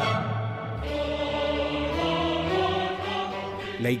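Background music of a choir singing long, held chords, with a low bass note coming in about a second in.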